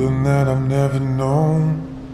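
Slowed-down pop song: a male voice holds one long, low sung note over the backing, bending slightly in pitch near its end. The voice stops shortly before the end, leaving quieter accompaniment.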